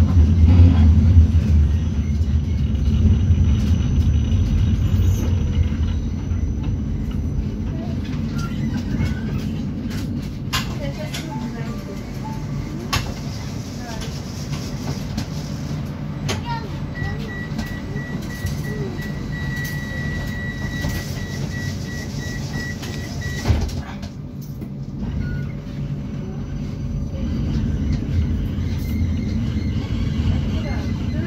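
Inside a moving Vienna tram: a steady low rumble of the wheels and running gear, loudest in the first few seconds, with a few sharp clicks and a knock. A rapid high beeping runs for about six seconds in the middle.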